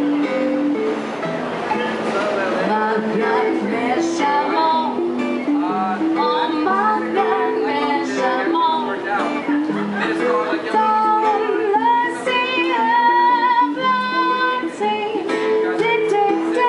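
Acoustic guitar strummed with a violin plucked like a mandolin, and two women singing a song in harmony, with long held notes near the end.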